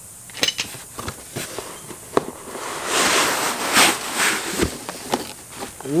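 Packaging being handled: plastic wrap crinkling and a cardboard box rustling, with scattered sharp clicks and crackles. A louder stretch of rustling comes about halfway through.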